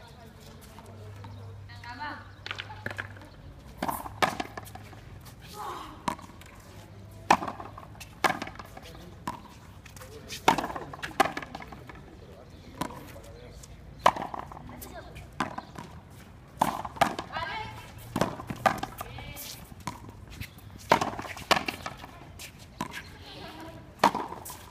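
A frontenis rally: a string of sharp cracks as the racket strikes the small hard ball and the ball hits the concrete front wall and floor, each with a short echo off the court, at an uneven pace of roughly one every half second to second and a half.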